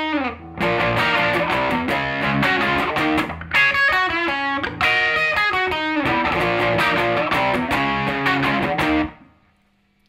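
Electric guitar (sunburst Les Paul-style with humbuckers) playing the chorus riff: double-stops on the top two strings mixed with single notes, with a quick slide down in the first half second. The playing stops about nine seconds in and fades out.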